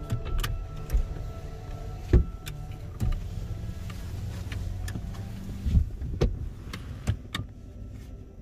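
Low rumble of a car heard from inside its cabin as it rolls slowly forward. Several sharp knocks and thumps are scattered through it, and a steady hum runs for a few seconds in the middle.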